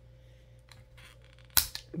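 A single sharp click of hard plastic toy parts being handled, about one and a half seconds in, after a near-quiet stretch.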